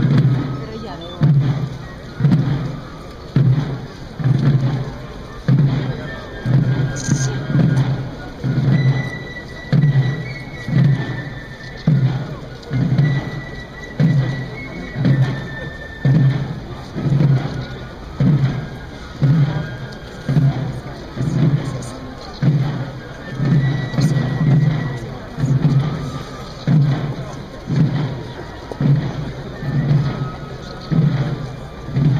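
Procession drums beating a slow, steady march cadence, about one stroke a second, with faint high fife notes coming and going above them.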